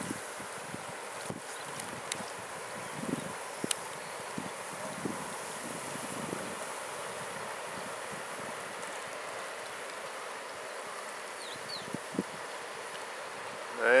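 Steady outdoor hiss of flowing river water and light breeze, with a few small knocks and clicks and two faint high chirps near the end.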